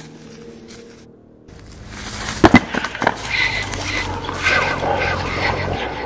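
A thin stone slab thrown down and smashing on the ground: a sharp crack about two and a half seconds in, with a second knock about half a second later as the pieces land.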